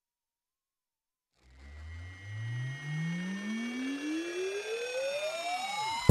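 Synthesized rising sweep (a riser effect) that starts about a second and a half in and climbs steadily in pitch from a low hum to a high whine, with fainter tones gliding downward above it.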